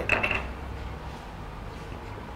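Empty plastic bottles handled and set on the filling machine's steel table under its two nozzles: a short high clink near the start, then faint handling over a low steady hum.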